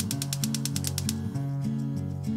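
Gas hob's spark igniter clicking rapidly, about ten clicks a second, as the burner under a stovetop moka pot is lit; the clicking stops a little past halfway. Background music plays underneath.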